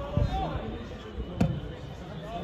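A football kicked once, a sharp thud about one and a half seconds in, with players' shouts around it.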